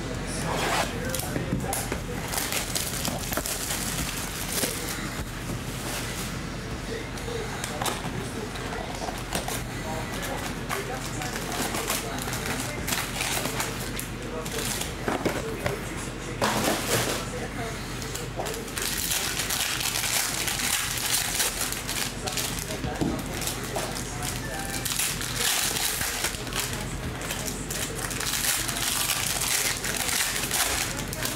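Foil-wrapped trading-card packs and their cardboard box being handled: irregular crinkling and rustling of foil as the packs are pulled out, stacked and torn open. A steady low hum runs underneath.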